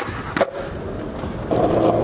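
Skateboard wheels rolling over concrete pavement, with one sharp click about half a second in and the rumble growing louder about a second and a half in.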